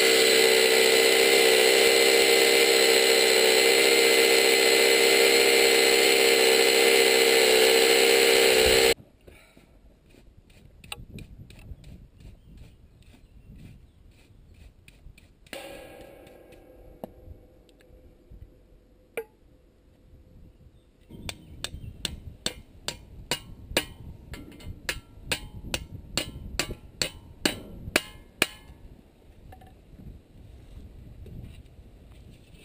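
Electric drill with a masonry bit boring into a concrete wall top, running steadily and loudly, then stopping abruptly about nine seconds in. Afterwards quieter sounds follow: a stretch of brushing and, near the end, a run of sharp, evenly spaced clicks.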